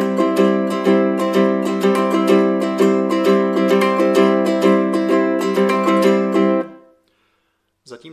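Low-G ukulele strummed with banjo fingerpicks in a steady down-up eighth-note rhythm, with a three-note triplet (thumbpick down, ring-fingernail pick down, index pick up) starting on the third beat of each bar. The strumming stops about six and a half seconds in.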